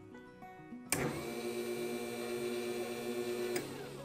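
A click as the 12 V SPDT relay is energised and closes its normally open contact, and a small DC motor starts running with a steady whine. Near the end it cuts off with another click as the relay drops out, and the motor winds down.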